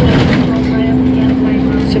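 A bus engine running steadily with road noise, heard from inside the moving bus: an even low hum throughout.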